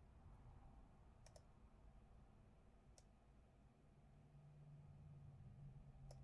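Near silence with a few faint computer mouse clicks: a quick pair about a second in and a single click about three seconds in.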